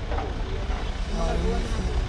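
Busy street ambience: a steady low rumble of traffic with people's voices talking now and then.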